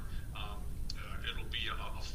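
Indistinct speech, one voice talking in short phrases, over a steady low hum of room noise.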